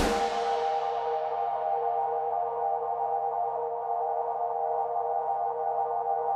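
A progressive metal instrumental's full band cuts off right at the start, leaving a sustained ambient synthesizer pad holding a steady chord. Its bright top fades away over the first two seconds, and the chord then rings on evenly.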